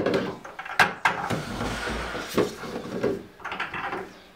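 Plastic milk jugs and containers being handled on a stainless steel counter: a few sharp knocks, the loudest at the very start and about a second in, with a scraping rustle between them and lighter knocks later.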